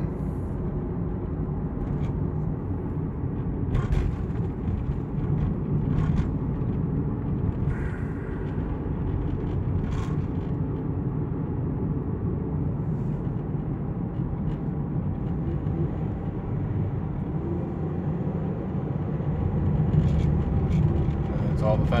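Steady engine and road rumble inside a Kia's cabin, with a few faint clicks, while the car struggles and will accelerate no faster.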